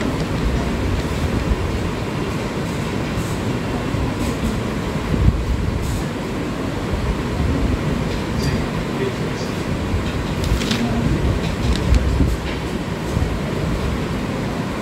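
Steady low rumbling room noise with a few faint clicks.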